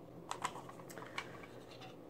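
Several light, sharp plastic clicks from a cassette tape and its clear plastic case being handled.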